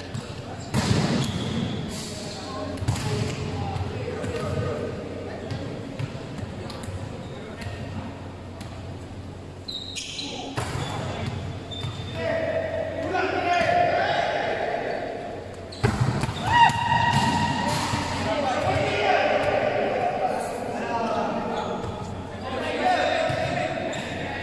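A volleyball being struck and bouncing on a sports-hall court, sharp slaps that ring on in the large hall, with players' voices calling out from about ten seconds in.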